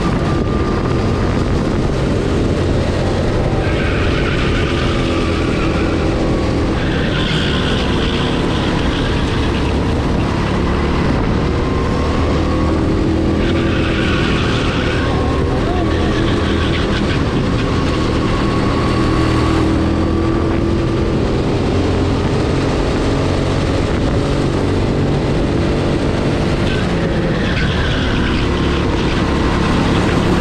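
Racing kart engine running hard through a lap, its pitch rising and falling as it accelerates out of corners and slows into them. It is loud throughout, with a few short bursts of higher hiss.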